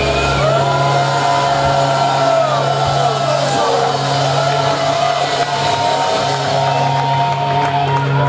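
Live heavy metal band: electric guitars hold long sustained notes with slow pitch bends over a steady held bass note, with little drumming, and shouting over the top.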